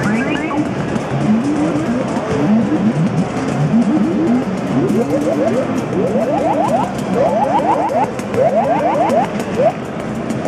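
Korg Monotribe analogue synthesizer playing a looping monophonic sequence of quick rising pitch sweeps, which move higher in pitch in the second half, over light regular ticking.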